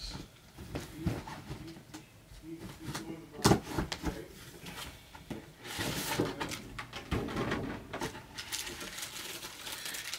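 Handling of a sneaker box and unwrapping a shoe: scattered clicks and rustling of plastic and paper wrapping, with a sharp knock about three and a half seconds in.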